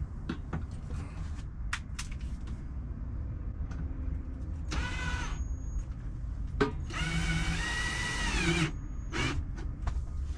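Cordless drill-driver driving screws to fasten the upper kitchen cabinet to the wall: a short whirring burst about halfway through, then a longer one of nearly two seconds whose pitch falls near its end, and a brief blip after it. Light knocks and handling taps come before the drilling.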